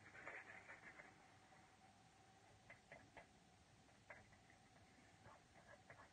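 Near silence, with faint scratching and a few soft, scattered ticks from a paintbrush mixing acrylic paint on a palette.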